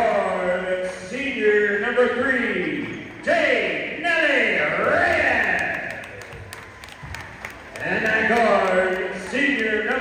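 A public-address announcer's amplified voice echoing through a gymnasium, calling out in long, drawn-out swooping phrases with short pauses between them.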